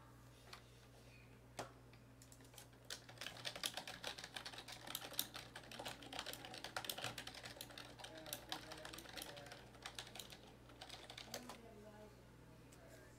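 Typing on a computer keyboard: scattered keystrokes at first, then a fast, dense run of clicks for several seconds that thins out near the end.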